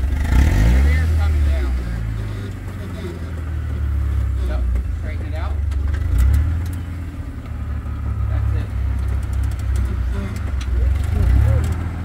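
1943 Willys MB jeep's engine running at low revs as it crawls over rock, the revs swelling and easing as the driver works the throttle.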